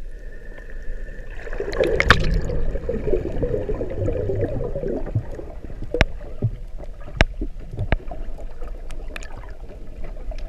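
Muffled underwater sound picked up by a camera in a waterproof housing: a steady low rumble of moving water, a gurgling wash from about one and a half to five seconds in, then a few sharp clicks.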